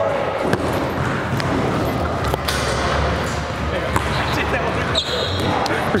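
Basketballs bouncing on an indoor gym court against a steady background of voices.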